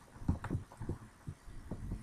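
A run of soft, irregular taps from a computer keyboard being used while a formula is edited.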